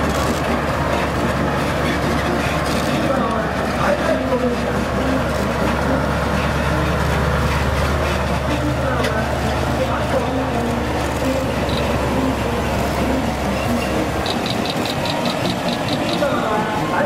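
Heavy police trucks, water cannon trucks among them, driving slowly past in a column, their engines giving a steady deep hum that is strongest in the middle and drops away about fourteen seconds in. A quick run of high ticks, about five a second, comes near the end.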